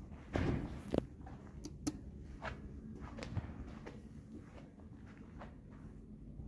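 A person's footsteps walking across a carpet-tiled floor, a series of soft, irregular steps and scuffs, with a few louder thumps in the first second.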